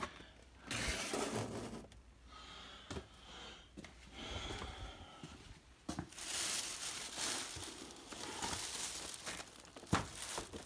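A thin plastic shopping bag crinkling and rustling in irregular bursts as a hand rummages in it, with a few sharp knocks of the boxed items inside being moved.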